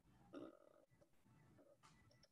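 Near silence: faint room tone, broken by one brief, faint sound about half a second in.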